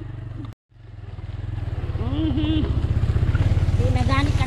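Small motorcycle engine running with a steady low pulse while being ridden on a dirt trail. It cuts out for an instant about half a second in, then comes back and grows louder. A voice is heard briefly around the middle.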